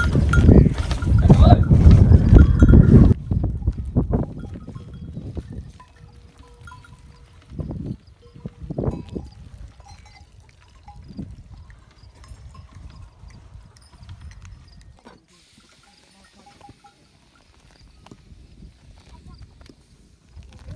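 Livestock moving about a camp, with the clank of a cowbell. The first three seconds are loud, with a low rumble and clatter; after that it falls quiet, with only scattered short sounds.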